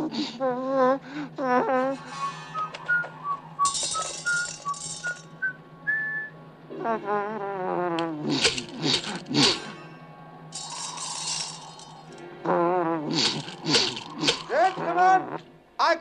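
Men laughing in bursts, with a short rising run of musical notes between the first two bouts of laughter and two brief bursts of hiss.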